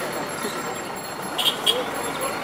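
Steady background murmur of voices and outdoor noise, with two short sharp clicks about a second and a half in.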